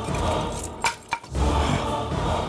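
Two sharp metallic clicks a quarter second apart, about a second in, over a low rumble.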